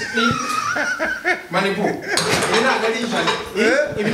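Voices talking and laughing, with a few metallic clinks from the loaded barbell and its iron weight plates as it is pressed and racked on the bench.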